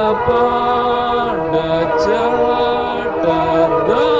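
A Malayalam Kingdom song (a Jehovah's Witness hymn) sung slowly over steady accompaniment. The melody moves in long held notes that drop to a lower note and rise back twice.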